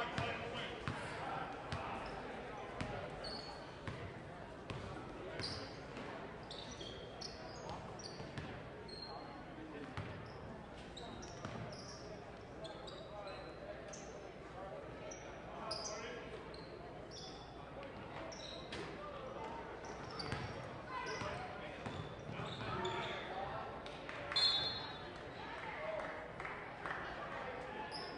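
Basketball game in a gymnasium: the ball bouncing on the hardwood court and many short, high sneaker squeaks, over indistinct voices of players and spectators echoing in the hall.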